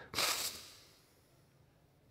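A person taking one deep, audible breath: a short rush of air about half a second long that fades within the first second.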